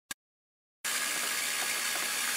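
Small 12-volt electric fuel pump running with a steady hiss and faint hum, circulating fuel to flush a sludgy marine fuel tank. The sound cuts in a little under a second in, after a brief click.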